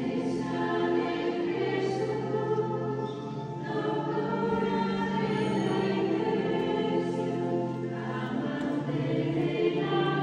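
A choir sings sacred music in long held notes, with steady sustained low notes beneath. The chords change every two seconds or so.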